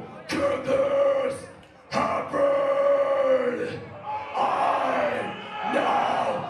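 Call-and-response shouting at a metal show: the singer shouts a phrase through the PA and the crowd shouts back, in several drawn-out shouted phrases with short breaks between them.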